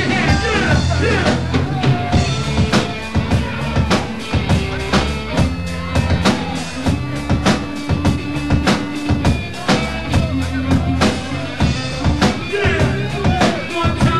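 Live rock band playing an instrumental groove: a repeating bass guitar line over a steady drum kit beat with kick and snare hits.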